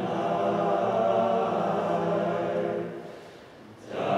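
Male a cappella group singing held chords in harmony. The singing fades about three seconds in to a brief pause, and the voices come back in right at the end.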